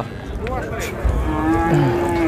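Cattle mooing: a short call early on, then one long, low, even moo starting a little past halfway.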